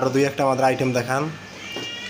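A man speaking with long, drawn-out syllables during the first second or so, then a short pause.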